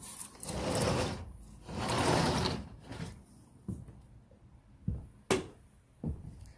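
Sliding glass door rolling along its track twice, each stroke about a second long, followed by a single sharp knock near the end.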